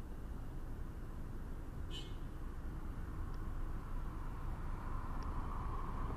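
A car's engine running close behind as it waits and then creeps up, a low steady rumble that grows louder toward the end.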